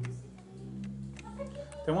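A few light clicks from computer input over soft, low background music, with speech beginning near the end.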